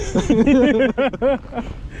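A man laughing: a quick run of four or five rhythmic 'ha' bursts in the first second and a half, over a steady low rumble.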